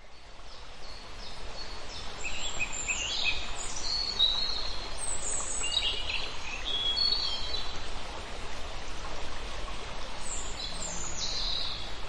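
Birds chirping and trilling over a steady background wash of noise, fading in over the first couple of seconds.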